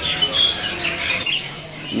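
Common mynas (jalak nias) giving harsh squawking calls, mixed with chirps from other caged birds, loudest in the first second.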